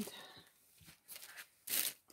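Paper gift bag rustling and scraping against tissue paper and the cardboard box as it is set inside, in a few short soft scuffs with one louder rustle near the end.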